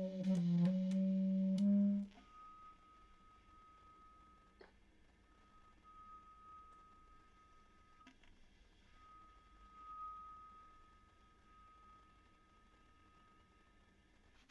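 Basset horn playing a contemporary piece: a few low notes in the first two seconds, then a single very soft, thin high note held for about twelve seconds, breaking off briefly about eight seconds in.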